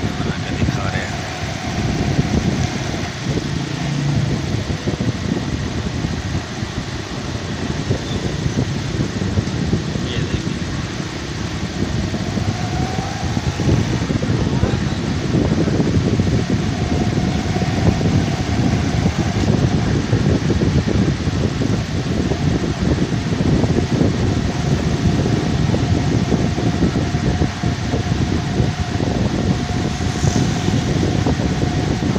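Steady engine and road noise of a small motor vehicle that the camera rides on, loud and continuous throughout: a lot of noise.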